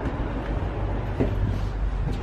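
A low, steady rumble of wind buffeting a handheld camera's microphone while walking, with a soft knock a little over a second in.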